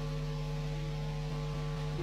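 A steady background drone of several held tones, low and middle, running unchanged with nothing else over it.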